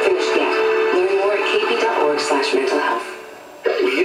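FM radio broadcast of music with a singing voice, played through a small speaker with almost no bass. It falls away about three seconds in, then comes back suddenly.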